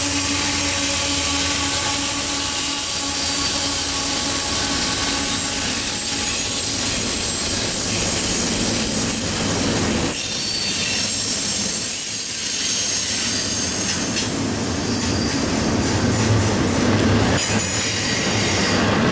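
A freight train's GE diesel locomotives passing close by with a steady drone that fades over the first few seconds. Then double-stacked container well cars roll past with continuous wheel-on-rail noise and thin, high-pitched wheel squeal.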